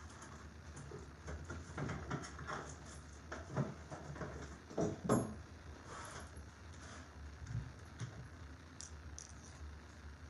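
Light rustling and scattered small clicks and knocks of hands handling a glue stick and loading it into a hot glue gun on a craft table, over a faint steady low hum.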